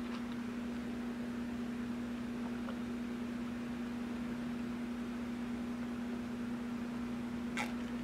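A steady low hum on one pitch over quiet room noise, with a faint click near the end.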